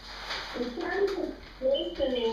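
A small child's high voice vocalizing in short, sliding, wordless sounds, over a rustle of a large paper sheet being handled.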